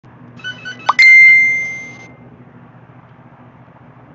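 A single loud bell-like ding about a second in, one clear ringing tone that fades away over about a second, just after a short rising note. Faint music with short repeating notes plays underneath and drops out after about two seconds.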